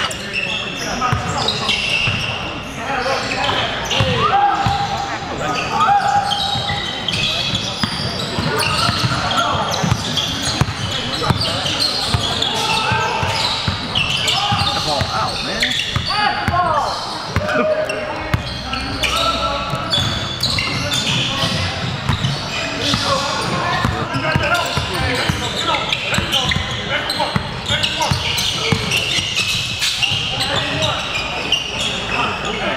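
Basketball dribbling and bouncing on a hardwood gym floor with many short sharp strikes, under constant voices from players and onlookers in a large gym hall.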